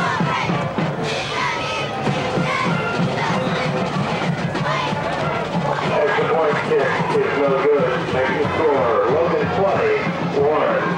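Football stadium crowd cheering and shouting, with a marching band playing. The band and voices grow a little louder about halfway through.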